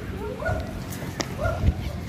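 Short, high-pitched animal calls, about two a second, each sweeping up and then holding, over the low rustle of walking with the camera and a couple of sharp knocks near the end.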